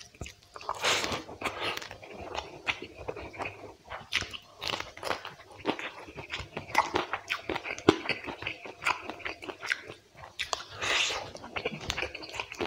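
Close-miked chewing of rice and spicy quail curry eaten by hand: wet mouth sounds, lip smacks and crunches in an irregular string of clicks, louder about a second in and again near the end. Fingers squish and mix the rice into the gravy on the plate.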